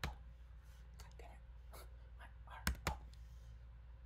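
Two sharp computer keyboard keystrokes about three seconds in, a fifth of a second apart, with faint whispered muttering before them.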